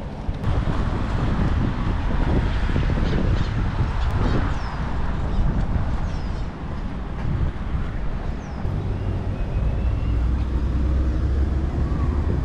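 Wind buffeting a handheld camera's microphone during a run: a steady low rumble that rises and falls with the jostling of the camera.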